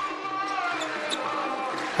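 A handball bouncing and players moving on the wooden court of an indoor sports hall, over a steady background of crowd noise.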